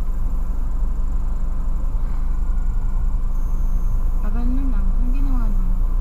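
Car engine idling, a steady low hum heard from inside the cabin.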